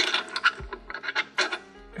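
Quick metallic clicks and scraping of a scooter's wheel axle being slid out through the deck's rear dropout and the wheel's bearings.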